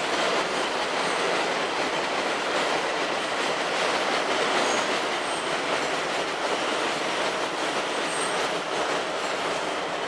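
A steady, even rushing noise with no rhythm, holding at one level throughout.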